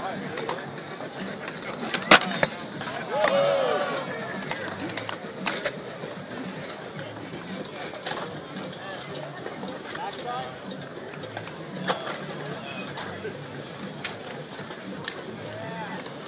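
Skateboard in a concrete bowl: sharp clacks of the board and trucks, the loudest about two seconds in, with others later. A shout from onlookers follows soon after the loudest clack, over steady crowd chatter.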